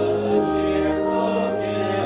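A congregation singing a hymn with organ accompaniment, in slow, sustained chords.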